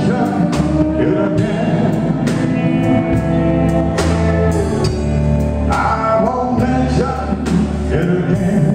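Live country band playing with drums, bass and guitars, including a pedal steel guitar. Pitched instrument lines carry the tune over a steady beat, with no words sung in this stretch.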